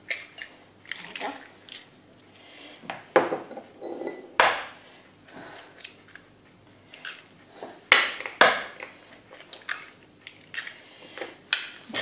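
Eggs being cracked into a glass mixing bowl: sharp knocks as each shell is struck and broken, a few seconds apart, with softer handling sounds between them.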